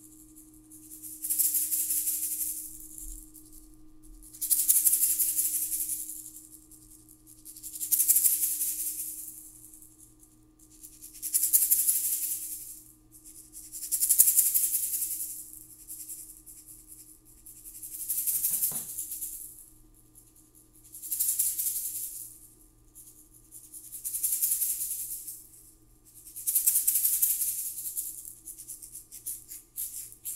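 A hand rattle shaken in slow, even swells, each building up and fading away, about one every three seconds.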